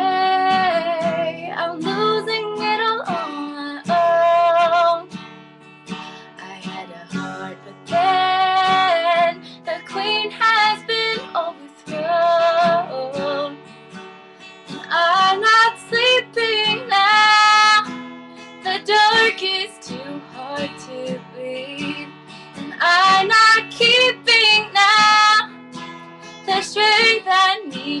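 A woman singing in phrases of a few seconds over strummed acoustic guitar.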